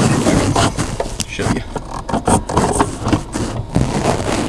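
Irregular scraping, rustling and knocks from hands working in a plastic dash slot, pulling a CB radio's wiring harness out of its mounting pocket, with close handling noise.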